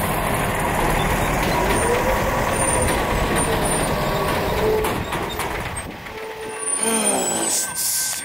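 A tractor-trailer semi truck pulling up close, with loud engine and road rumble for the first five seconds. Near the end its engine note falls as it slows, and air brakes give a sharp hiss just before it stops.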